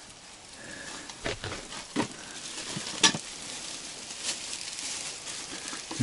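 Fish frying in a pan on a portable gas stove, sizzling steadily, with a few sharp clicks in between.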